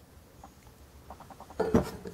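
Faint light ticks, then a brief metallic clink near the end as cast-iron engine parts are handled.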